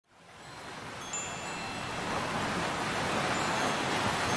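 Wind chimes ringing faintly over a steady rushing wash of noise that fades in from silence and swells.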